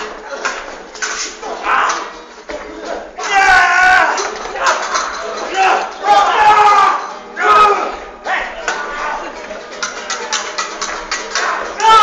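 Actors in a staged sword fight shouting and crying out several times, with a run of short sharp clicks and knocks near the end.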